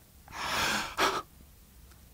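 A man's audible intake of breath, lasting about half a second, followed by a brief second breath sound about a second in: a reader drawing breath before the next line.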